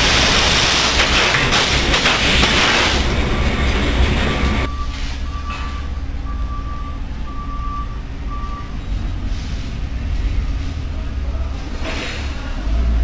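Factory noise: a loud rushing hiss for the first four and a half seconds that cuts off suddenly, leaving a low steady rumble. Over it a vehicle backup alarm beeps, short even beeps about once a second for several seconds.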